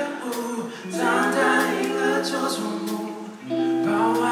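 Live band music in a slow, soft passage: long held chords with singing voices, the chord changing about a second in and again near the end.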